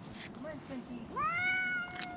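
A black-and-white cat stranded up a tree meowing: one long meow, about a second in, that rises in pitch and then holds.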